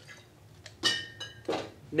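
Bar tools clinking: one sharp clink about a second in, with a short ring like metal striking glass, then a softer knock just after.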